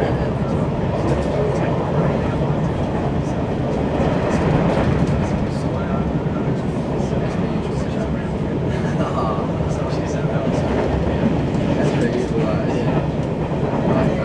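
Passenger train running along at speed, heard from inside the carriage as a steady rumble and rail noise.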